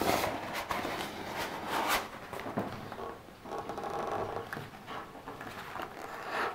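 A rubber washing-up glove being pulled on and worked onto the hand: irregular rustling and rubbing, with sharper snaps at the start and about two seconds in.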